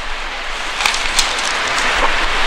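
Steady loud hiss with no tone in it, with a few faint clicks about a second in.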